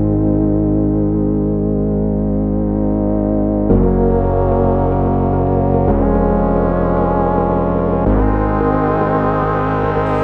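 Background music of sustained held chords, changing three times.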